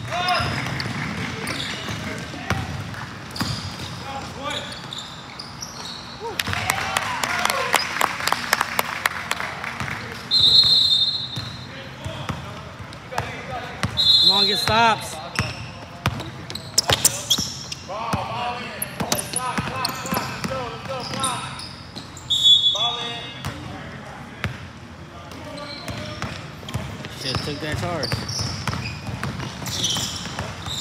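Indoor basketball game on a hardwood court: a basketball bounces in dribbles, with a quick run of bounces about a third of the way in, and players' voices call out in the echoing gym. Three short high-pitched squeals stand out as the loudest sounds, about a third of the way in, at the halfway point and about three-quarters through.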